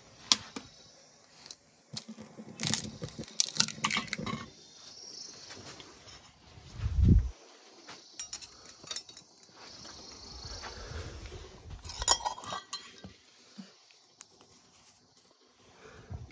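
Scattered clinks and knocks of steel kitchen utensils and containers being handled, with a dull thump about seven seconds in.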